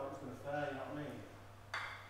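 A man's voice, indistinct, for about a second, then a single short clink near the end, over a steady low hum.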